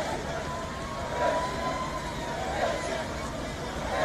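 A vehicle siren holding one long, slowly rising tone over the chatter of a roadside crowd and the low running of vehicles.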